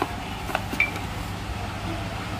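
Low steady background hum with a couple of faint handling clicks as a small lamp unit and its cables are moved in the hands, and one brief high chirp just under a second in.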